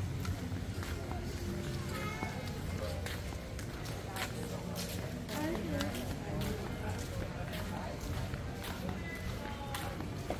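Busy pedestrian street: people talking as they pass, flip-flop footsteps slapping at walking pace, and faint background music.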